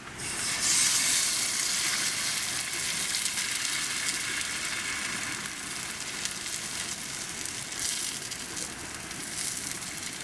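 An egg sizzling loudly as it fries in oil in a hot guitar-shaped skillet. The sizzle starts suddenly, peaks about a second in, then runs on as a steady crackling hiss.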